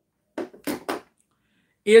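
Three short knocks and rattles, about half a second to a second in, as a plastic-handled utility knife is picked up and handled. A man's voice starts near the end.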